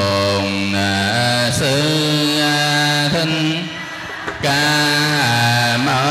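A Buddhist monk chanting into a handheld microphone, a Vietnamese temple chant sung in long held notes that step up and down in pitch, with a brief pause for breath about four seconds in.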